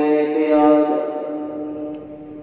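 A man's voice, amplified through a microphone, holds one long chanted note at the close of a sermon phrase and then trails off, fading away over the last second.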